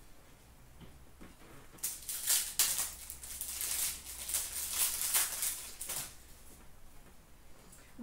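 An 18-19 Upper Deck Platinum hockey card pack being opened: the wrapper tearing and crinkling, and the cards sliding out, in a run of quick, crisp rustles from about two seconds in until about six seconds in.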